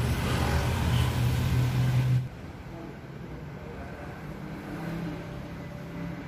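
A motor vehicle's engine running in street noise, with a strong low hum that stops abruptly about two seconds in. Quiet indoor room tone follows.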